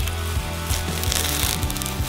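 Masking tape being peeled off freshly painted car bodywork, with a tearing rasp from about a second in that lasts about a second. Background music with a steady bass line runs underneath.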